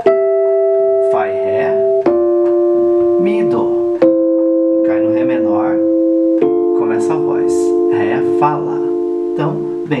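Keyboard playing a Rhodes electric piano sound: a descending run of four sustained chords, each held about two seconds, the 'caidinha' fall of F, Em, Dm, C.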